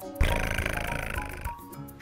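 Background music, with a rough, buzzy sound starting suddenly about a quarter second in and fading out over about a second.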